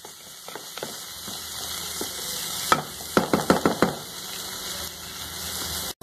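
Chopped onion, garlic and spices sizzling in oil in a metal pot while a wooden spoon stirs them, with a quick run of clicks and knocks from the spoon against the pot about three seconds in.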